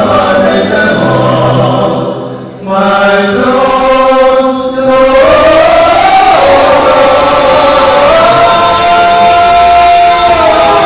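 Male vocal quartet singing a gospel hymn a cappella in close harmony into handheld microphones. The voices drop out briefly about two and a half seconds in, then come back in long held chords.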